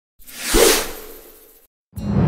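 Whoosh sound effect for a logo intro, with a low thud about half a second in at its loudest, then fading away over about a second before a short silence.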